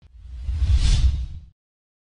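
A whoosh sound effect with a deep rumble underneath, swelling for about a second and then cutting off abruptly about one and a half seconds in: an edit transition onto the closing title card.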